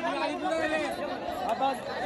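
Crowd chatter: many men's voices talking and calling out over one another at once, with no single voice standing out.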